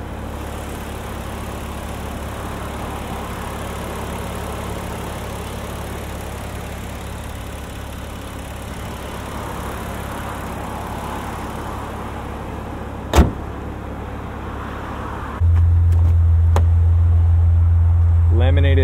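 Maserati Levante GranSport's twin-turbo V6 idling in sport mode, a steady low drone that grows much louder about 15 seconds in. A single sharp slam about 13 seconds in, the hood being shut.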